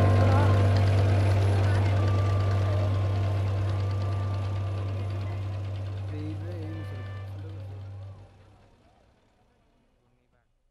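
Motorboat engine running steadily as a low hum, with voices faintly over it; it slowly gets quieter and fades out about eight seconds in.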